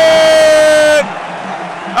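A loud, steady horn blast about a second long, dipping slightly in pitch as it cuts off, then arena crowd noise.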